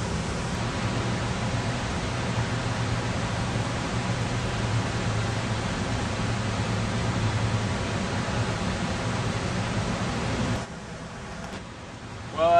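Steady outdoor background noise, an even hiss with a low hum under it and no voices. It drops abruptly to a quieter hiss about a second before the end.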